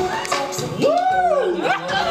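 Students' voices in a classroom: overlapping chatter and chuckling, with one drawn-out voice sliding up and back down in pitch in the middle.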